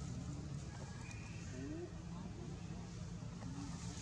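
Faint, indistinct voices over a low steady hum.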